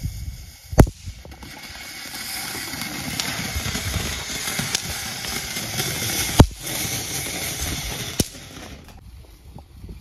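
Diwali firecrackers going off: three sharp bangs, the first about a second in, one past the middle and one near the end, with a steady hiss of burning fireworks between them.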